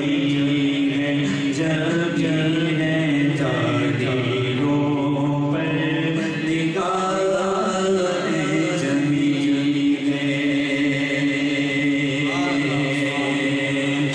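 Male voice singing a naat, an Urdu devotional poem, unaccompanied, in long held and ornamented notes. A second male voice holds a steady low drone beneath the melody.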